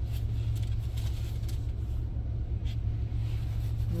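Minivan engine idling, a steady low hum heard from inside the cabin.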